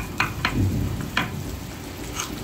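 Wooden mallet striking a woodcarving chisel by hand, cutting into a wooden relief panel: three short sharp taps, two close together and a third after a short pause.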